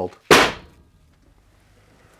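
A hand slapped down hard on a tabletop once, a single loud smack about a third of a second in that dies away quickly.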